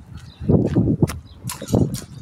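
Low rumbling and knocking on a phone's microphone as it is handled and swung around, with a few sharp clicks about a second in and near the end.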